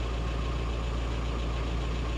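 Steady low rumble of a van's engine idling, heard from inside the cab.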